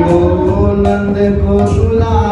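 Devotional kirtan chanting: voices singing a mantra together to the beat of a two-headed mridanga drum.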